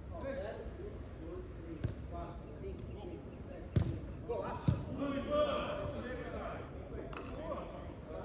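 A football being kicked during play on an artificial-turf pitch: three sharp thuds, the loudest near four seconds in, with players calling out during the play.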